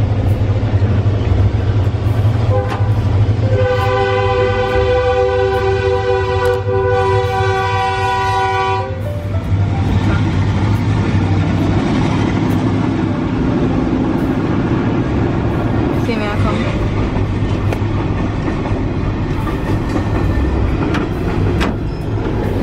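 A freight train's horn sounds one long blast of several tones at once, starting a few seconds in and lasting about five seconds. It is followed by the rumble of tank cars rolling over the level crossing, heard from inside a waiting car.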